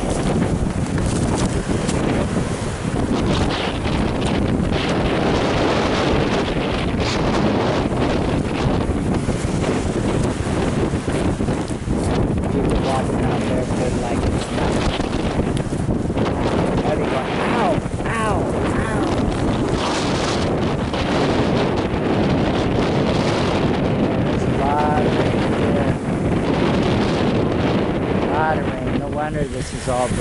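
Strong wind buffeting the microphone over surf breaking and washing on a pebble beach, a steady loud rushing with no let-up.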